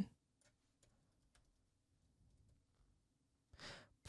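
Near silence: room tone with a few faint clicks, and a short breath in just before speech resumes.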